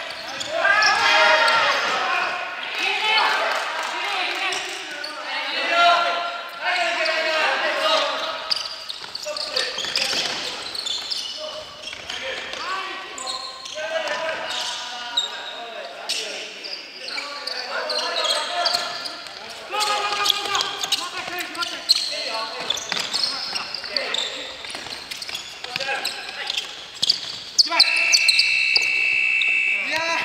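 Indoor futsal play: players shouting to each other over repeated ball kicks and bounces on a wooden gym floor, all echoing in a large hall. A steady high tone starts about two seconds before the end.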